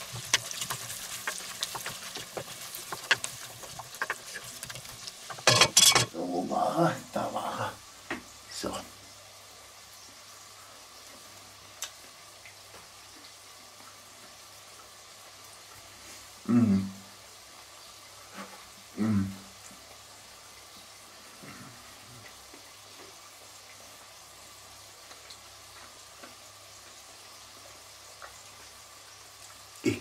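Vegetables frying in a lot of hot oil in a cast-iron Dutch oven, sizzling and scraping as they are stirred with a wooden spatula, for the first five seconds or so, with a loud knock about six seconds in. After that it goes mostly quiet, broken by two short low hums from a man's voice a little past the middle.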